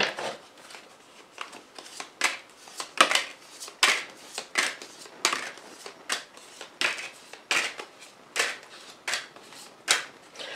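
A deck of tarot cards being shuffled by hand: a run of short papery swishes, roughly one every half to one second.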